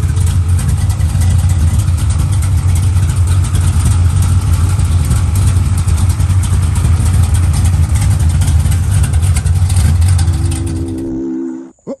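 Car engine idling loudly and steadily, cutting off abruptly near the end.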